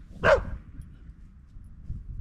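A dog barks once, a single short bark about a quarter of a second in.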